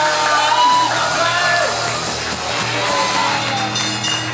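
A live rock band playing, with electric guitars, bass and drums, and a singer's voice carrying the melody over it through the PA.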